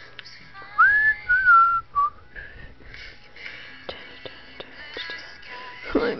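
A person whistling three short notes, one rising, one falling and one short one, about a second in, over faint music playing in the background.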